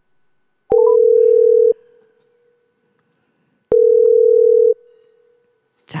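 Telephone ringback tone heard down the line while an outgoing call rings unanswered: a steady tone sounds for about a second, then stops for two seconds, twice. A quick rising three-note beep comes just before the first ring.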